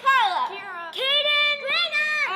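Children's voices in sing-song, drawn-out speech, with one syllable held about a second in.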